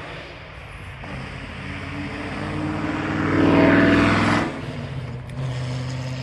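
A motor vehicle passes by, its noise swelling over a few seconds to a peak about three and a half seconds in and dropping away about a second later, over a steady low engine hum.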